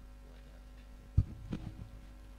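Steady low hum from a PA sound system, broken about a second in by a sharp low thump and then a few softer bumps: a microphone being handled on its stand.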